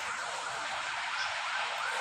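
A faint siren-like tone rising and falling about three times a second over a steady background hiss.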